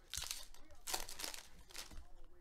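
Foil wrapper of a trading-card pack being torn open and crinkled by hand, in three short crackling bursts.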